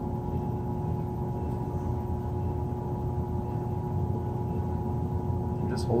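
Electric pottery wheel running steadily while a mug is trued up on it: a constant motor hum with a low rumble and a few fixed tones, no change in speed.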